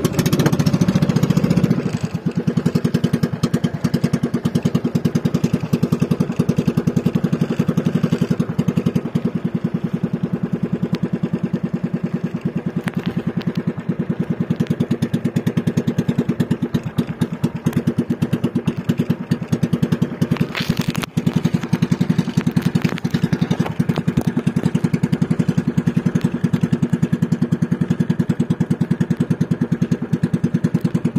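Small engine of an outrigger fishing boat running steadily, a little louder for the first two seconds. It dips briefly about 21 seconds in.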